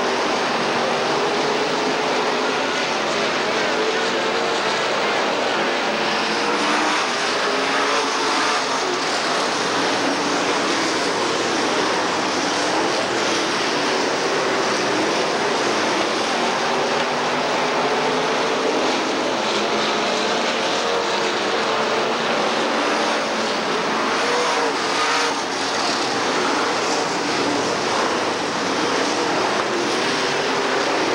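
Dirt late model race cars' V8 engines running hard at racing speed around a dirt oval, a steady wall of engine noise whose pitch rises and falls as the cars pass and change speed. The sound comes through the hiss and muddiness of an old VHS tape recording.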